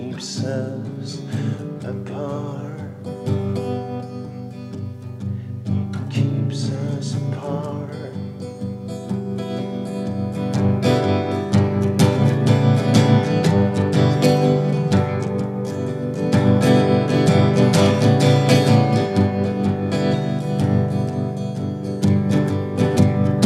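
Steel-string acoustic guitar strummed live, with a man singing over it in the first seconds. The strumming grows louder and fuller about ten seconds in.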